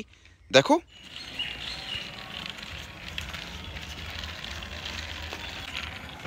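A plastic toy dump truck's wheels rolling along a rough mossy concrete wall, a steady rolling noise, after a brief spoken word near the start.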